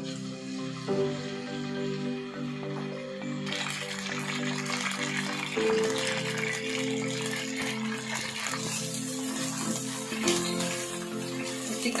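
Raw chicken pieces sizzling in hot oil in a karahi over background music. The sizzle comes in about three and a half seconds in, as the chicken goes into the oil, and carries on steadily.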